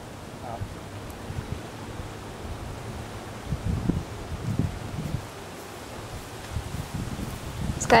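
Wind blowing outdoors and buffeting the microphone: a steady rush with low rumbling gusts, strongest about halfway through.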